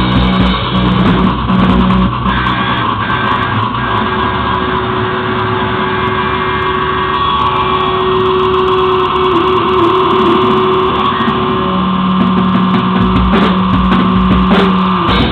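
Live noise-rock band: electric guitar holding long, droning notes while the drums thin out to a few hits, then return with cymbal crashes near the end.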